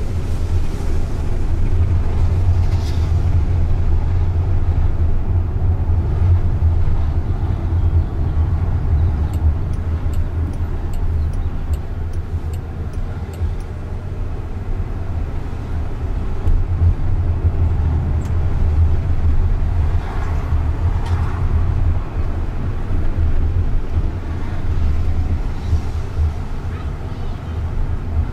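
Steady low road and tyre rumble inside the cabin of a Jaguar I-PACE electric car driving on city streets, with no engine note. A run of faint high ticks comes about a third of the way in.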